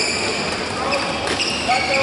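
Badminton hall din: a background of many voices echoing in a large hall, with short high squeaks of court shoes on the floor and one sharp tap about a second in.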